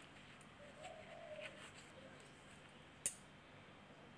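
Quiet stirring in a wok, with a single sharp knock of the spoon against the pan about three seconds in. A dove coos faintly once in the background about a second in.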